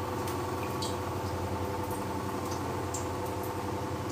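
A steady machine hum with several fixed tones, like a running motor or fan, with a few faint clicks.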